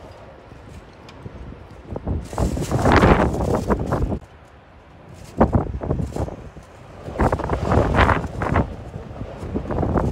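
Wind buffeting the microphone in several irregular gusts, rising and falling over a few seconds each.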